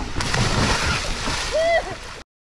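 Water splashing, starting suddenly a moment in, with a short vocal cry near the end.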